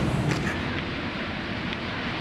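Steady outdoor background noise: a low rumble with an even hiss above it, typical of wind on the microphone and distant traffic, with a few faint clicks.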